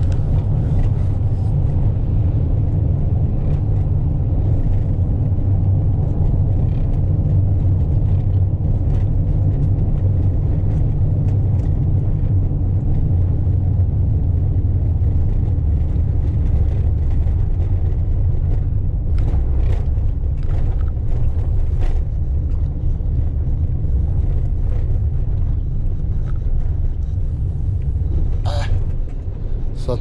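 Steady low rumble of engine and tyres, heard from inside the cab of a Fiat van driving at speed through a road tunnel.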